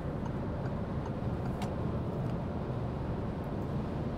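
Steady road, tyre and engine noise heard inside a Peugeot car's cabin while it cruises at motorway speed.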